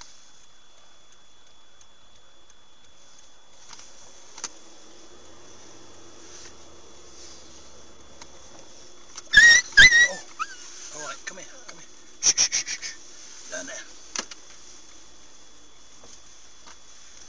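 Loud, sharp voice-like cries in two short bursts, about nine and twelve seconds in, with a few fainter ones after, over faint steady background noise and a constant high thin whine.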